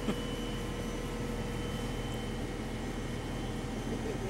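Cadillac Gage V-100 armored car's engine running steadily, a constant low hum with a faint steady whine above it, heard from on top of the hull.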